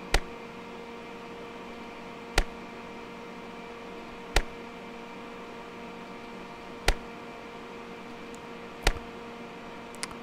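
Five short sharp clicks about two seconds apart, one for each 10-microsecond RF test pulse, over a steady electrical hum. The first click is weaker than the rest.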